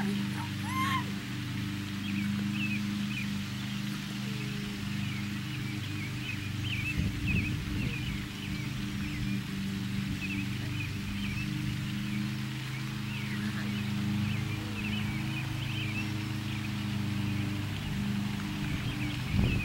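Small birds chirping here and there over a steady low mechanical hum.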